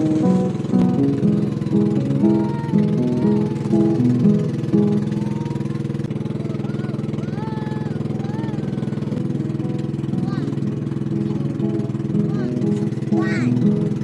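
Background music playing over the steady drone of a pump boat's engine; the music thins out for several seconds in the middle, leaving mostly the even engine hum.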